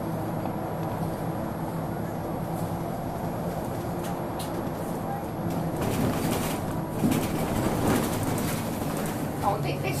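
Wright Solar single-deck bus heard from inside, a steady drone of its engine and ZF automatic gearbox with a tonal hum. From about six seconds in, the body and fittings rattle and knock while it runs.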